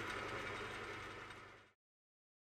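Myford ML7R metal lathe running with no load, a faint, steady mechanical hum from its motor and drive, fading out after about a second and a half.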